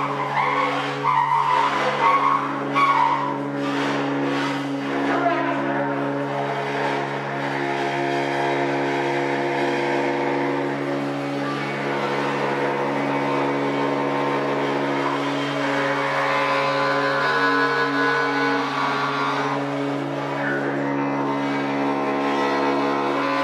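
Cymbals scraped and rubbed with a stick and pressed against a second metal disc, giving sustained ringing metallic tones. There are sharper scrapes and clatters in the first few seconds, then a long held drone.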